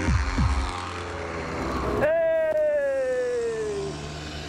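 Street go-kart engines passing close by: a quick falling drone right at the start, then about two seconds in a high, buzzing engine note that drops steadily in pitch for about two seconds as another kart goes past.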